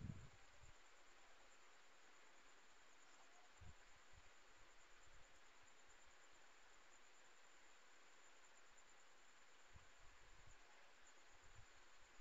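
Near silence: faint steady hiss of room tone, with a few soft low thumps.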